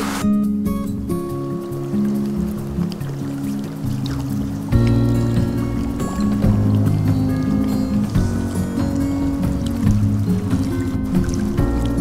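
Instrumental background music with held notes changing in steps; a deeper, fuller low part comes in about five seconds in and it grows louder.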